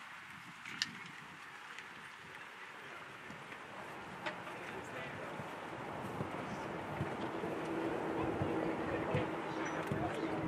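Outdoor show-jumping ring ambience: indistinct spectator voices with a few scattered hoofbeats of a horse cantering and jumping on turf. A steady low hum comes in about two-thirds of the way through and the whole scene grows slowly louder.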